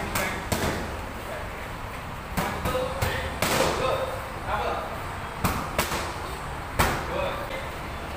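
Boxing gloves smacking focus mitts and a belly pad in a padwork drill: sharp hits in small clusters of two or three, about seven in all, the loudest near the end.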